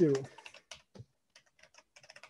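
Typing on a computer keyboard: irregular, faint key clicks at an uneven pace.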